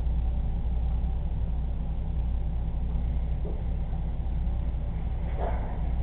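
A steady low hum that runs on without change, with a short sound near the end.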